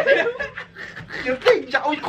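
Several young men laughing together in short bursts, the loudest about a second and a half in.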